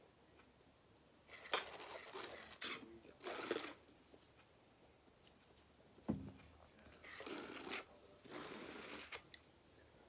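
A person drinking from a mug: several short bursts of gulping and breathing noise, with one sharp click about six seconds in.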